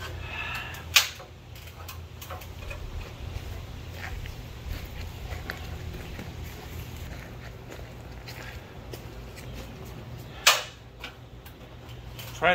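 A steady low hum, with two sharp knocks: one about a second in and a louder one near the end.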